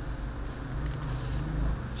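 Steady low rumble with a hiss: a gas stove burner running under a stainless steel pot of water.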